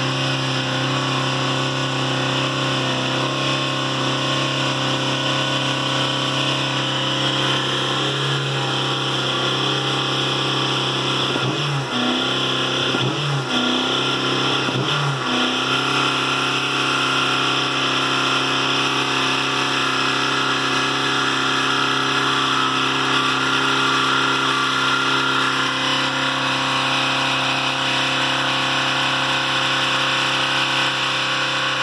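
2011 Dodge Caliber's four-cylinder engine held at about 4,000 rpm in Park with the accelerator pressed by a boot, running steadily at high revs; a little before halfway the revs dip and recover three times in quick succession. The engine is being deliberately run hard at sustained high revs to kill it.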